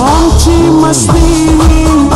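Slowed-down, reverb-heavy Pashto song: a long held note over a deep, steady beat.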